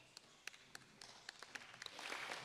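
Faint, scattered hand claps from a few people, uneven at first and getting denser near the end as applause begins.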